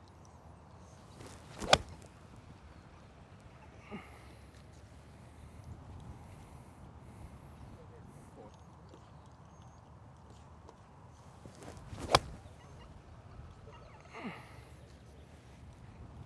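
An iron striking a golf ball off the range turf: a sharp crack about two seconds in, and a second, similar strike about twelve seconds in.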